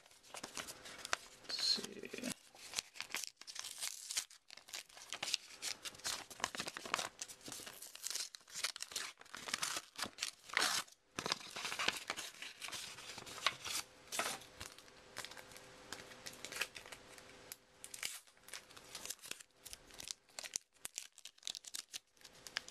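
Paper wrapping being torn and crumpled by hand, with irregular crackling rips throughout.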